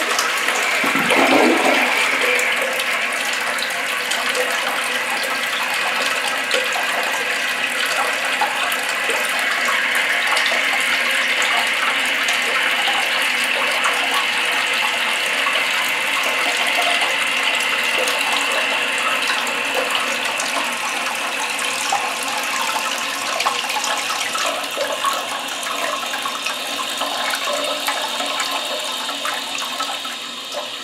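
Test flush of a toilet fitted with a new Fluidmaster Performax flush valve repair kit: the bowl drains with a surge just after the start, then the tank refills through its fill valve with a steady hissing rush that eases off near the end. The new flapper is seating and letting the tank fill.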